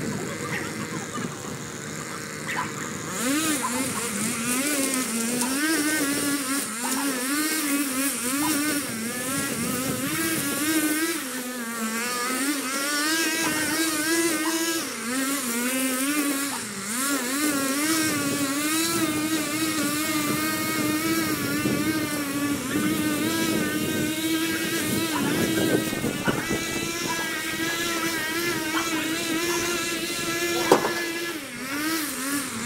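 Gas string trimmer running hard while cutting down overgrown weeds and brush, its engine speed rising and falling constantly as the line bogs in the growth and frees again. The cutting noise gets louder about three seconds in, and the engine settles to a steadier pitch near the end.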